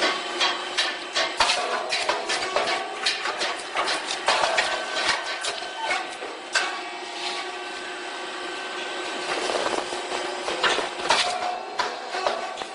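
Four-mould rice cake popping machine at work: a run of sharp, irregular clicks and knocks from the press and its moulds as the rice cakes are puffed, over a faint steady tone.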